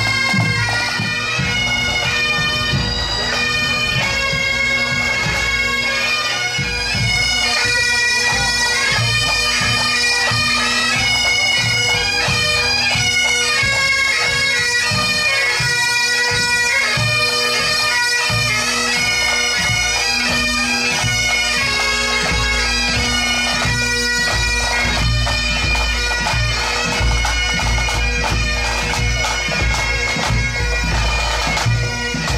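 Pipe band playing: Great Highland bagpipes with steady drones under the chanter melody, kept in time by snare and bass drum beats. The low end grows heavier in the last several seconds.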